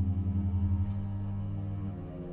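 Italian western film-score music: low sustained tones with a fast fluttering pulse in the bass notes that settles into a steadier sound about a second in.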